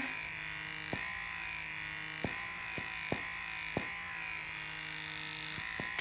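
A PMD Microderm Elite Pro microdermabrasion wand running, its small vacuum-suction motor giving a steady hum as the exfoliating tip is worked over the skin, with a handful of light clicks spread through.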